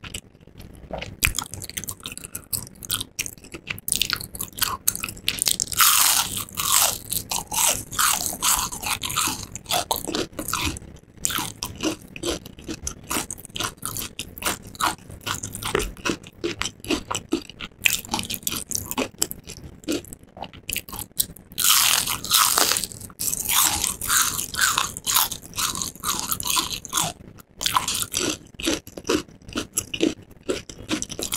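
Close-miked crunching and chewing of crispy breaded fried shrimp. Two loud, crisp bites come about six seconds in and again at about twenty-two seconds, with steady crackly chewing between them.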